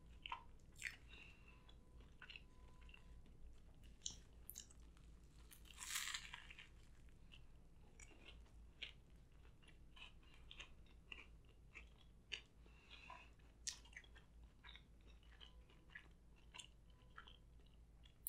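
Faint close-miked chewing and crunching of a Hot Cheeto–crusted fried chicken slider, with soft mouth clicks scattered throughout and one louder crunch about six seconds in.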